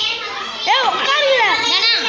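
Many young schoolchildren's voices talking over one another, with a few high voices calling out in rising-and-falling arcs through the middle.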